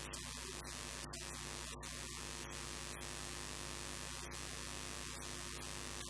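Steady electrical mains hum under a loud static hiss, with no voice coming through, broken by several very short dropouts.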